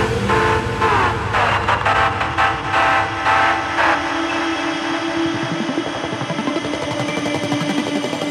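Electronic bass music from a DJ set: falling synth glides and stuttering chopped pulses about three a second, giving way after about four seconds to a held low synth note under a fast, gritty rattling texture.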